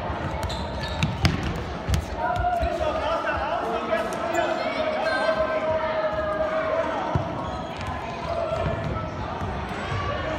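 Indoor football being played in a large echoing sports hall: sharp knocks of the ball being kicked and bouncing on the hard floor, most of them in the first two seconds, with voices calling out across the hall and one drawn-out shout from about two to seven seconds in.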